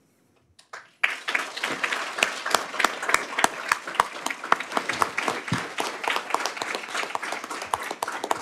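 An audience applauding: after about a second of quiet, many people start clapping at once, and the applause keeps going steadily.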